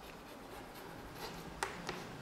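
Chalk writing on a blackboard: faint scratching as a word and an arrow are written, with two sharp chalk taps in the last half second.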